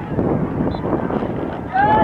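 Wind rumbling on the microphone over spectators' voices at a soccer game; near the end a person calls out with a long shout that bends up and down in pitch.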